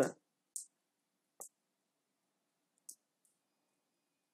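Two faint computer-mouse clicks, about a second and a half apart, with a brief soft hiss shortly before the first.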